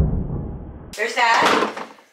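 A low, muffled rumble that fades over the first second, then breaks off. A short burst of voice follows.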